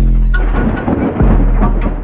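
Logo intro sting of electronic music and sound design. A deep bass hit opens it under a dense, noisy rumble, and a second bass hit lands about a second in.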